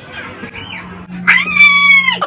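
A young man's high-pitched, drawn-out whimpering wail, a mock cry of fright, starting a little past halfway and sliding slightly down in pitch.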